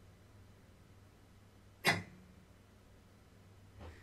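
A single sharp snap about two seconds in, with a short decay: a light 16-pound barebow recurve being shot, the string released and the arrow leaving. A faint low hum runs underneath.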